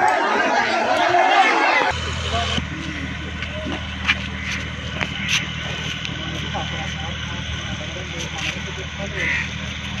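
A crowd of men shouting and talking over one another, cut off sharply about two seconds in. A steady low boat-engine drone follows, with faint voices and a few clicks over it.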